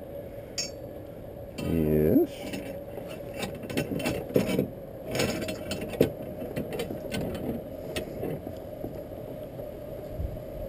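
Steel rotisserie spit rod and its prong forks clinking and scraping as they are handled and fitted into a whole lamb: scattered sharp metal clicks over a faint steady hum. A short voice-like sound comes about two seconds in.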